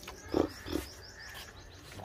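A calf at a water trough makes two short drinking or breathing sounds with its mouth and nose, a few tenths of a second apart. A run of quick, high bird chirps plays over them.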